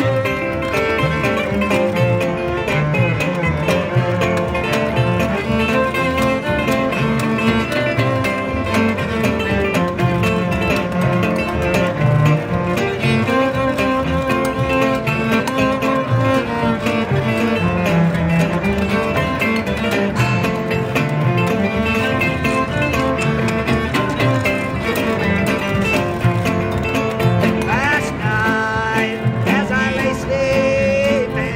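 Jug band playing an instrumental passage of a country blues: bowed cello over strummed guitar, with washtub bass and washboard keeping the rhythm.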